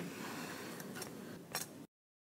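Faint background hiss with a couple of soft ticks, cutting off to dead silence near the end.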